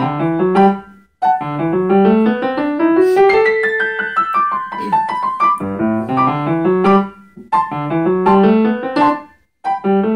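Grand piano played solo: repeated phrases of quick rising note runs that climb from low to high, with brief pauses between phrases about a second in and again near the end.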